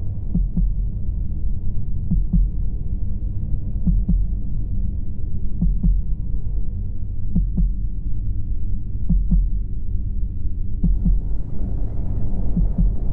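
Soundtrack heartbeat effect: a double thump, like a heartbeat, repeating about every second and three-quarters over a low steady drone.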